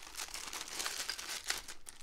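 Clear plastic packaging bag crinkling as it is handled and pulled open to free a small metal tripod. The crackles are irregular, with a sharper crackle about one and a half seconds in, and they die down near the end.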